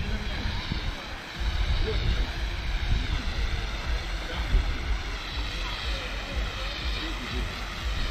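Wind buffeting an outdoor microphone: an uneven low rumble that gusts up about a second and a half in and keeps coming and going, with faint distant voices under it.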